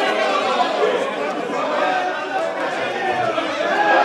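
A crowd of people, mostly men, talking at once: steady overlapping chatter with no single voice standing out.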